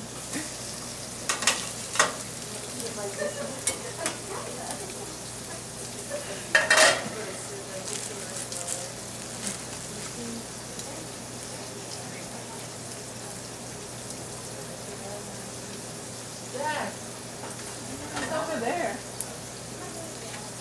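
Hamburger patties and French toast frying in stainless steel pans: a steady sizzle throughout. Over it come a few sharp clinks of metal tongs against the pans in the first seven seconds, the loudest about seven seconds in.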